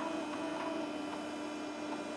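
Steady hum of an old DOS-era desktop PC running, with a held tone over a faint hiss.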